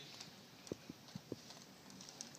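Near silence: faint room tone with about four light clicks in the middle, a little over a second apart in total.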